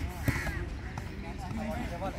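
A volleyball is struck in a forearm dig, giving a sharp thud about a quarter second in, with a lighter knock about a second in. A bird calls in the background.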